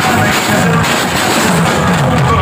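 Live band music played loud through a stage PA system, heard from the audience.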